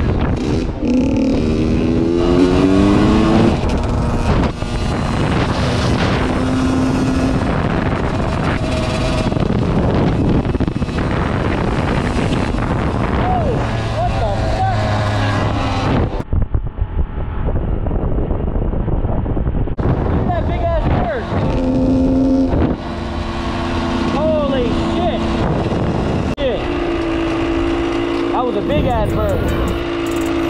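Dirt bike engine revving up and holding steady while riding on pavement, with rising pitch sweeps as it accelerates and wind noise on the helmet microphone. Music plays underneath.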